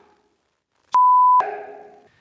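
A single steady high-pitched censor bleep, about half a second long, starting about a second in with a sharp click at each end. It blanks out a swear word, and a short fading tail follows it.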